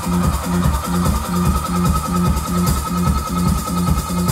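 Live band playing repetitive, techno-like instrumental music: a steady pulsing drum and bass groove repeating at an even pace, under a sustained high tone.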